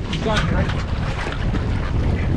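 Outboard motor running at trolling speed under steady wind buffeting on the microphone, with a short call from a voice about a third of a second in.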